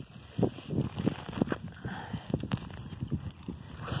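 Footsteps on a gravel dirt road: a quick, irregular series of short scuffing steps, a few each second.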